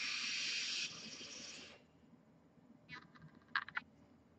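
A person blowing out a long breath of vapour, strongest in the first second and fading out by about two seconds. Near the end come two short crackling bursts, like an e-cigarette coil sizzling as it fires during a draw.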